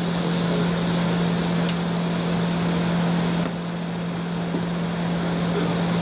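Steady mechanical hum: a constant low tone under an even hiss, the hiss easing a little just past halfway.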